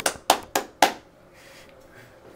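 Hand claps, four sharp claps in quick succession within about the first second.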